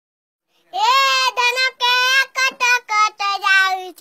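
A young boy singing an Odia song unaccompanied in a high, clear voice. He starts a little under a second in, with a run of short held notes.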